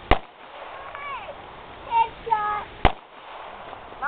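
Two gunshots from a .22-calibre Ruger handgun, each a single sharp crack, the first right at the start and the second almost three seconds later.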